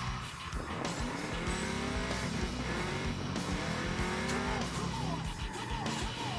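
V8 engine of a Mazda RX-7 (FD) drift car, its revs rising and falling several times as it drifts, with tyre squeal, under background music.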